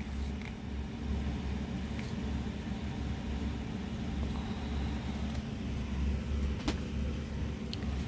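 Steady low mechanical hum, with two short clicks near the end.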